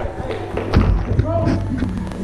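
Footsteps thudding on a foam box and pipe obstacle, the loudest about three quarters of a second in and a lighter one just after, with voices in the background.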